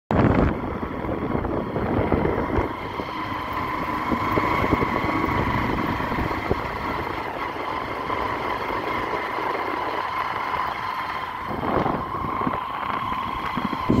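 Motorcycle on the move, heard from the pillion seat: a steady engine hum with a faint high whine, mixed with road and air noise and a few brief knocks.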